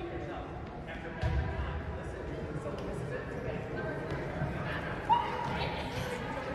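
Indistinct voices echoing in a large gym, with a low thud a little over a second in and a short, sharp, louder sound about five seconds in.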